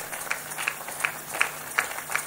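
Scattered hand clapping from a large crowd, sharp irregular claps over a general crowd noise, with a faint steady hum beneath.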